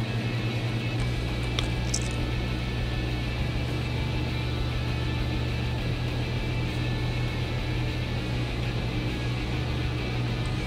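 Soft background music over a steady low hum, with a faint click or two about two seconds in.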